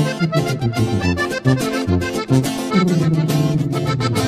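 Sierreño band playing an instrumental break with a steady beat: button accordion carrying the melody over a tuba bass line and strummed acoustic guitar.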